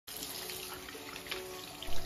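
Water from a bathroom sink faucet running in a steady stream into the basin as paintbrushes are rinsed under it.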